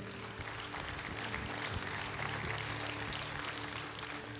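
Soft background music of held keyboard chords, with a steady, even haze of noise over it.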